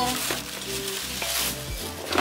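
Thin plastic bag rustling and crinkling as it is handled and pulled from a cardboard shipping box.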